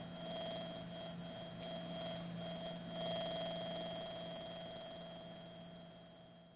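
Steady high-pitched tone of a square plate driven at 4.6 kHz by an electrodynamic exciter, resonating in a complex high-order mode, with a fainter lower hum beneath it. It wavers in loudness and then fades gradually toward the end.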